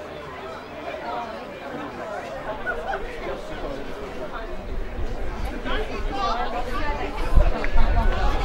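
Football spectators chattering and calling out, several voices overlapping. A low rumble builds through the second half, with a thump near the end.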